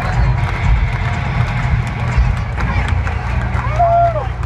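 Stadium rock concert heard from far up in the stands on a phone: a steady, heavy low rumble from the distant sound system, with crowd voices around the microphone and one voice rising and falling near the end.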